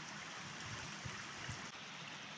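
A small stream trickling and running steadily, a faint, even rush of water.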